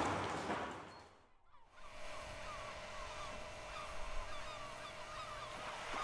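Faint outdoor ambience: many small bird calls over a steady low hum. It follows a brief moment of silence about a second in.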